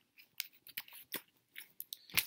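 Faint, irregular mouth noises just after a drink: a string of small lip smacks and tongue clicks.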